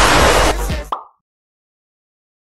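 A loud, noisy laser-beam blast sound effect over music with a deep bass. It cuts off abruptly about a second in with a short pop.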